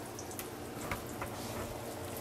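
Breaded chicken cutlets frying in hot olive oil in a cast iron skillet: a steady sizzle with scattered small pops and crackles.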